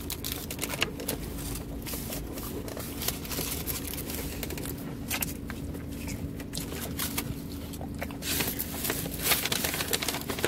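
Brown paper takeout bag rustling and crinkling as hands handle the food inside it, with a steady low hum underneath. The rustling gets louder and busier near the end.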